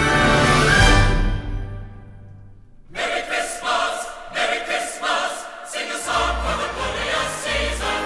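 Orchestral Christmas music dies away over the first two seconds or so. About three seconds in, a choir with orchestra begins singing, and a deep bass line joins about six seconds in.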